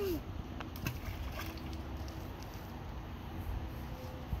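A thrown rock splashing into a shallow creek about a second in, with a few short sharp clicks, over a steady low rumble.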